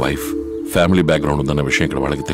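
Film soundtrack: a low voice over background music.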